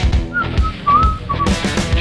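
Background music: a short, high whistled melody of about a second over low drum beats.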